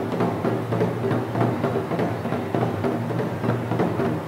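Japanese taiko drums struck with wooden bachi sticks by an ensemble in a quick, driving rhythm, about four to five hits a second.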